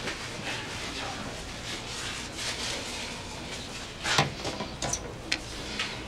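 Quiet room tone, a steady low hiss, with a few short soft clicks or rustles about four to five seconds in.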